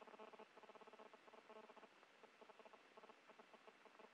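Faint, rapid squeaks in quick uneven runs from a space station hatch mechanism being worked by hand.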